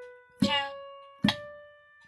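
Piano notes of a one-octave D major scale played slowly with the right hand. Two notes fall in this stretch, each struck and left to ring and fade, a little under a second apart. A voice counts "one, two" on the strokes.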